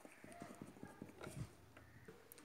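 Faint ballpoint pen strokes on paper: a scatter of small irregular ticks and scratches as letters are written by hand.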